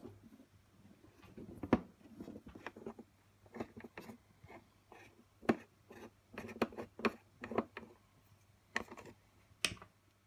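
A screwdriver turning out screws seated in the rubber feet of a reverb unit's back plate: scattered small clicks and scrapes at an irregular pace, a few of them sharper.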